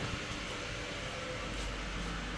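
Faint steady hum and hiss of an electric car charging: the Wuling Air EV's charging system running.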